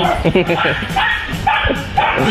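A dog barking in several short, sharp barks and yips.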